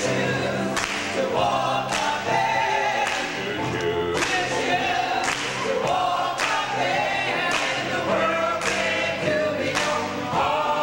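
Gospel choir singing in full voice, with a sharp beat about once a second.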